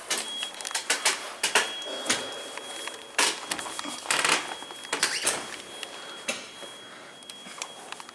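Irregular knocks and clatter at an elevator doorway as a manual wheelchair rolls across the door sill, over a faint steady high-pitched tone.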